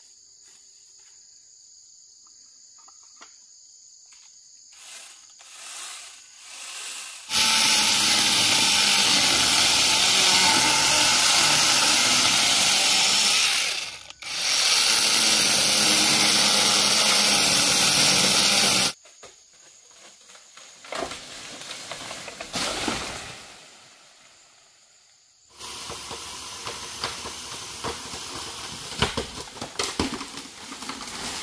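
Battery-powered mini chainsaw cutting through a green bamboo cane: a loud, steady buzzing hiss starting about seven seconds in, with a short break near the middle, and stopping abruptly after about eleven seconds in all. Before the cut, insects chirp steadily; afterwards there is rustling and light cracking of the cut bamboo.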